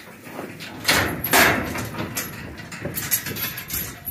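Metal livestock trailer clanking and rattling, with two loud crashes about a second in and lighter clatter after.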